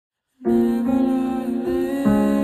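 A girl's voice singing a slow melody in long held notes, starting abruptly about half a second in.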